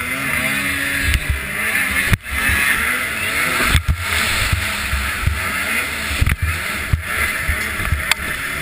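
Racing snowmobile engine running hard, its pitch rising and falling with the throttle, under heavy wind buffeting on a helmet-mounted microphone. The sound cuts out briefly twice, about two seconds in and again near four seconds.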